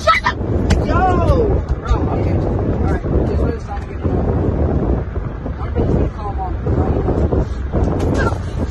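Children's raised voices inside a car cabin, over a steady low rumble and rubbing and bumping noise as a girl scrambles over the seats.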